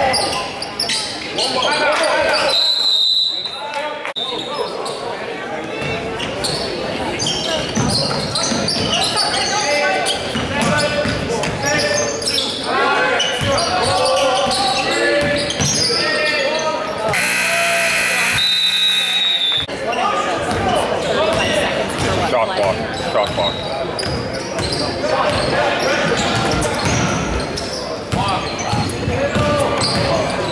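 High school basketball game in an echoing gym: a basketball dribbling, players and spectators shouting and talking. A short referee's whistle sounds about three seconds in, and a little past halfway a scoreboard horn blares for about two seconds, followed by another whistle.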